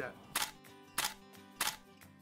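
Three camera shutter clicks about half a second apart, over soft sustained background music.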